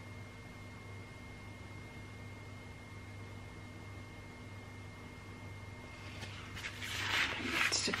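Steady low room hum with a faint high whine. About six and a half seconds in, a louder burst of rustling noise starts and runs to the end.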